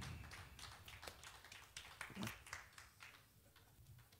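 Faint, scattered hand claps from a small congregation, thinning out and stopping about three seconds in.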